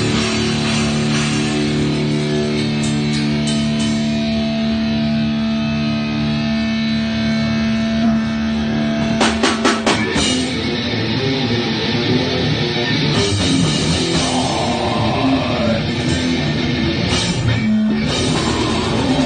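Live heavy metal band: distorted electric guitars and bass hold a sustained chord, then a quick run of drum hits about nine seconds in brings the full band into fast riffing over the drum kit.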